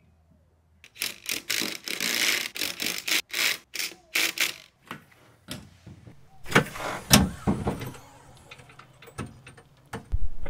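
Irregular metallic clinking and clattering of wheel nuts and hand tools as a van's rear wheel is refitted, followed by a couple of heavier knocks with a dull thud about two-thirds of the way through.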